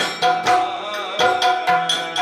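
Yakshagana drumming: the hand-played maddale and the stick-struck chande playing a quick steady rhythm of about four strokes a second, each stroke ringing with a pitched tone, with a short break about a second in.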